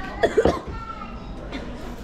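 A young woman coughs in a short burst of two or three sharp coughs about a quarter second in, reacting to a sip of a cafe drink she dislikes. Quieter voice sounds follow.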